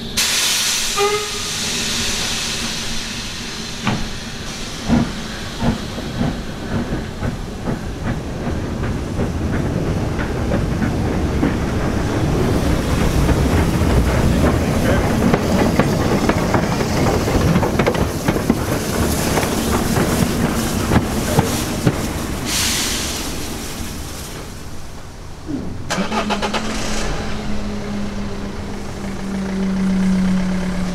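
Hunslet Austerity 0-6-0 saddle tank steam locomotive moving slowly past at close range: steam hissing and wheels and rods knocking over the rails, the rumble loudest in the middle as it passes. Further bursts of steam hiss follow, and a steady low hum starts near the end.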